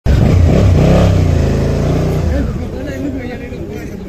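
Motorcycle engine running loudly close by as the bike pulls away, then fading with its pitch rising and falling as it rides off through a cone slalom.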